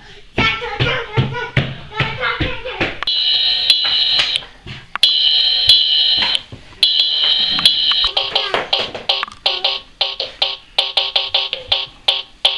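Electronic music from a children's drum sound book's small built-in speaker: a tinny synthesized tune with steady high electronic tones, turning into a run of short, evenly spaced beats in the last few seconds.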